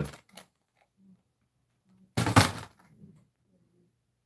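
Handling noise: one short knock about two seconds in, over a faint steady room hum.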